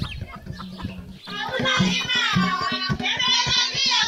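Chickens clucking over background music with a pulsing low beat. About a second in, a loud, long, wavering high-pitched voice joins and carries on to the end.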